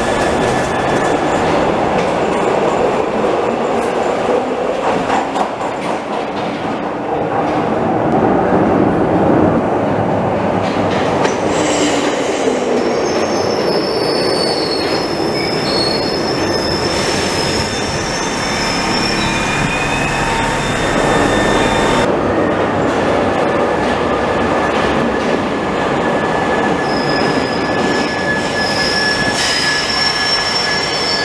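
Glasgow Subway trains running through an underground station: a steady rumble of wheels on track as one train pulls out and another comes into the platform. High wheel squeal comes in through the middle and again near the end.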